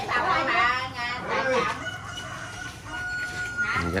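A rooster crowing, its call ending in a long held note that cuts off near the end, over people's voices in the background.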